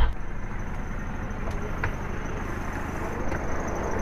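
Steady low rumble of a vehicle engine running close by, with a couple of faint clicks.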